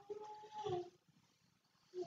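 A faint animal call, held for about a second and falling in pitch at its end, followed by a short second call near the end.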